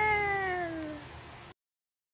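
One long, high vocal call that falls slowly in pitch and fades, then is cut off abruptly about one and a half seconds in.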